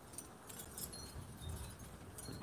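Faint, scattered light metallic tinkling over a low rumble of wind on the microphone.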